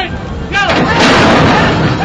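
Horse-racing starting gate springing open with the start bell ringing: a sudden, loud clatter about a second in that lasts nearly a second as the field breaks.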